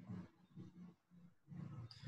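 Near silence broken by a few faint, short, low murmured vocal sounds from a person.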